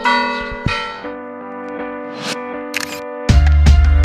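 Church bells ringing, a few strikes with long, overlapping ringing tones. About three seconds in, loud music with a heavy bass beat cuts in.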